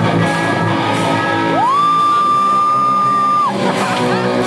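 A rock band playing live in a hall, with a long high note that slides up about one and a half seconds in, holds steady for about two seconds, and falls away near the end.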